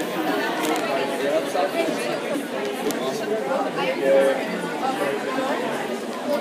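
Indistinct background chatter of many voices, steady throughout, echoing in a large room.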